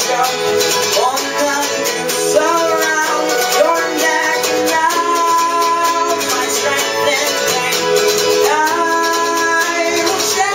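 A small band playing folk-rock: strummed acoustic guitar, a small-bodied plucked string instrument and keyboard, with singing over them.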